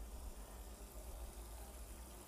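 Faint steady hiss over a low hum: room tone.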